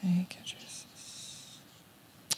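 Whispered prayer under the breath, opening with a brief voiced syllable and then soft whispering for about a second.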